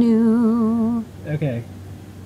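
Closing note of a sung intro jingle: a single voice holds a low note with a regular vibrato for about a second, then stops abruptly. A brief spoken sound follows just after.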